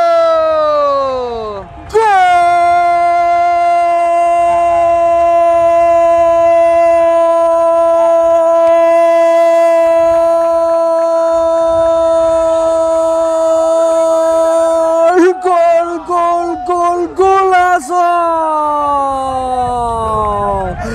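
A football commentator's long drawn-out goal cry ('gooool'), held on one high pitch for about thirteen seconds, wavering briefly, then sliding down in pitch near the end. A shorter falling cry comes before it and breaks off about two seconds in.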